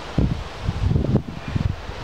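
Wind buffeting the microphone in irregular low rumbling gusts.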